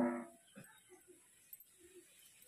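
A single short animal cry, about half a second long, right at the start.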